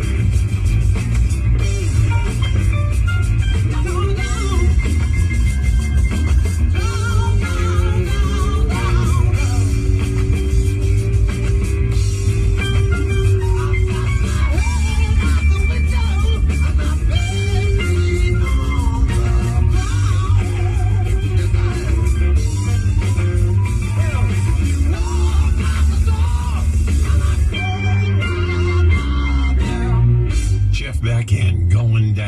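Rock song with electric guitar, bass and some singing, playing on a car radio.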